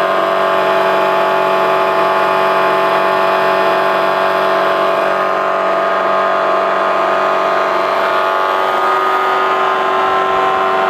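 DC motor belt-driving a home-built QEG generator replica, running at a steady speed with a constant hum made of several steady tones.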